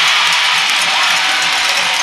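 Ice hockey arena crowd: steady, loud crowd noise from a packed stand.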